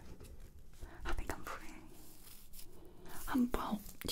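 A woman's soft, close-up whispering voice, with a few faint clicks in the first second or so and a short voiced murmur near the end.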